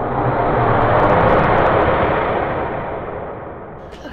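An edited-in transition sound effect: a loud, rushing rumble with no pitch that swells over the first second or so and then fades away toward the end.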